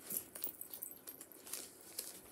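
Soft rustling and small ticks from a fabric project pouch being handled and a clear plastic project sleeve being drawn out of it.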